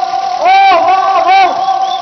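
A man's voice through a stage microphone leading a rhythmic rally chant: the same short shouted phrase repeats about every two seconds over crowd noise. A steady tone runs underneath.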